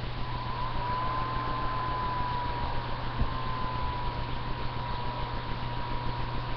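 Steady low hum under an even hiss, with a thin high-pitched whine that comes in just after the start and wavers slightly in pitch.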